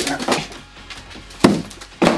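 Handling noise from a cardboard box and a VCR being shifted about, with scattered knocks and one loud sharp thump about one and a half seconds in.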